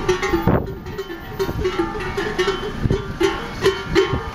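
Sheep bells clanking irregularly as a flock walks past close by: many short ringing clanks on much the same pitch.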